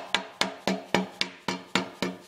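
Hammer tapping a new axle seal into the end of a Ford 8.8 rear-axle housing, about four even strikes a second, each blow ringing briefly in the metal housing as the seal is driven flush.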